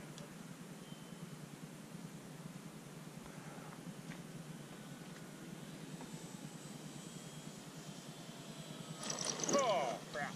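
Distant electric RC model airplane motor whine, faint over steady outdoor background noise, growing louder near the end as the plane comes in close overhead.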